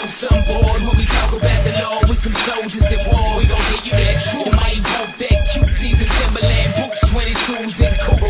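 Christian hip-hop track: a bass-heavy beat with rapped vocals over it.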